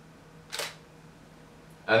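A single short camera shutter click about half a second in, as a photo is taken.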